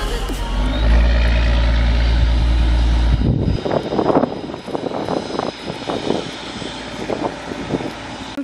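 Fishing trawler's engine running as the boat motors past, a rough mechanical drone. A deep low hum under it in the first few seconds cuts off abruptly about three and a half seconds in.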